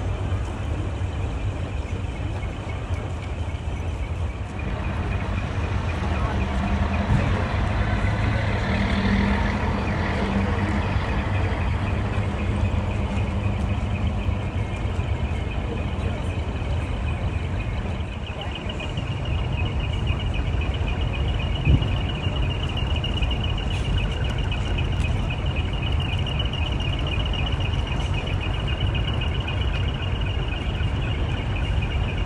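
Heavy diesel trucks running at low speed as they roll in and manoeuvre, their engine note rising for several seconds in the first half. In the second half a high, fast-pulsing tone joins the steady engine sound, and there is one sharp click about two-thirds of the way through.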